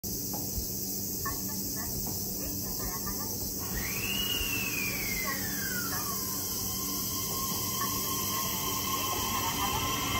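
Steady high buzzing of insects. About four seconds in, a whine rises and then slides down, and in the second half the JR East E131 series electric train starts to pull away with a steady tone.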